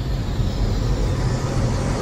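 Cinematic logo-intro sound design: a low rumble under a noisy whoosh that swells toward the end.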